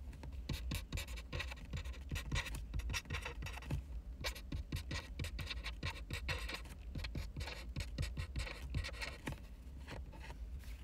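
A pen scratching across paper in quick, irregular handwriting strokes, pausing briefly a few times, over a steady low hum.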